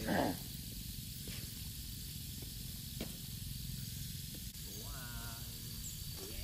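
Steady hiss of a small staked mini-sprinkler spraying water, over a low rumble, with a short rising pitched sound about five seconds in.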